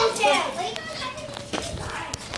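Children's voices, indistinct talk and play sounds close to the phone's microphone.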